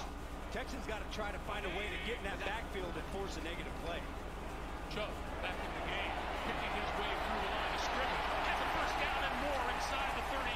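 Football TV broadcast audio, faint: commentators calling the plays over stadium crowd noise, with the crowd growing louder in the second half.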